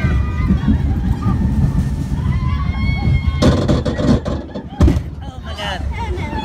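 Wind buffeting a phone's microphone on a moving amusement ride, with riders' voices calling out and a few sharp knocks against the phone about three and a half and five seconds in.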